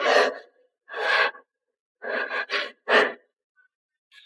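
A person's wordless gasps: four short vocal sounds of about half a second each, the last about three seconds in.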